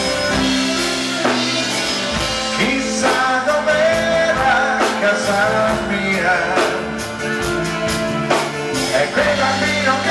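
Live rock cover band playing, a male lead singer singing into a handheld microphone over the full band.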